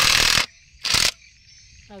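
Makita cordless impact wrench with a bit adapter driving a fastener into a wooden beam: a loud burst of running stops about half a second in, then a short second burst about a second in.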